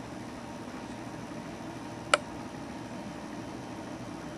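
Steady low hum and hiss of room noise, broken by a single short, sharp click about two seconds in.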